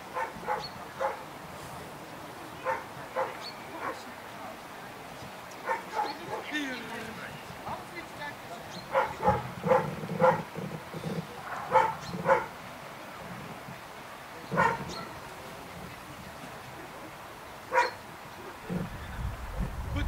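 A dog barking in single short barks, spaced irregularly, with a cluster of louder barks in the middle.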